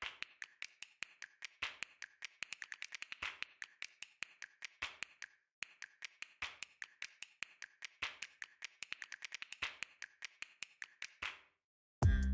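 Rapid small clicks and taps of plastic being handled as a robot-vacuum battery pack's casing is opened by hand, several clicks a second, pausing briefly about halfway through and again near the end.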